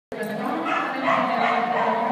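A dog barking, with people talking in the background.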